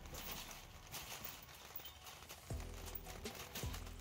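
Metal shopping cart rattling as it is pushed and rolled along, wheels and wire basket clattering. Faint background music with deep, dropping bass notes comes in about halfway through.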